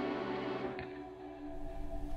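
A held chord on an acoustic guitar ringing out and dying away over about a second and a half, the end of a take.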